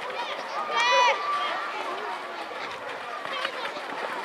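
Voices calling out and shouting during a youth football game, with one loud, high-pitched shout about a second in.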